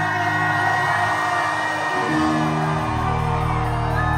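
A live rock band plays long, ringing chords on electric guitar and bass as the song ends. The chord changes about halfway through, and audience members whoop over it.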